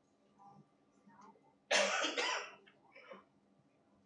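A person coughing: a sudden cough of two quick bursts about two seconds in, followed by a fainter one.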